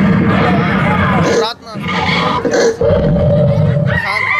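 A group of children's voices shouting and calling out together, loud and rough, over party music, with a brief lull about one and a half seconds in.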